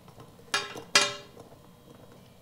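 Key being turned in the lock of a SHAD SH59X plastic motorcycle top case: two sharp clicks close together, about a second in, each with a brief metallic ring.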